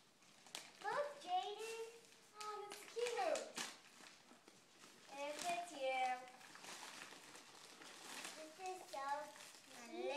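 A young girl's high-pitched voice in four short spells of wordless vocal sounds, over the crinkle and rustle of gift wrapping as she pulls a present out of its bag.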